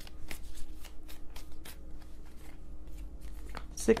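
A deck of tarot cards being shuffled by hand: a run of quick, irregular card snaps and flicks.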